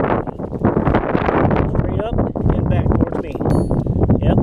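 Strong wind buffeting the microphone in a steady rumble, with brief indistinct voices in the middle.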